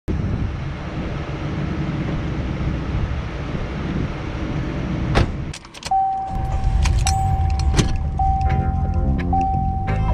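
A loud low rumble, then a car door shutting about five seconds in. After it come sharp clicks and a steady high tone that breaks off every second or so, with background music with a beat coming in near the end.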